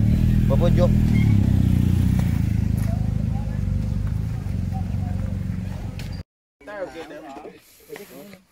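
Motorcycle engine idling close by, a steady low rumble that rises briefly about one to two seconds in. It cuts off abruptly about six seconds in.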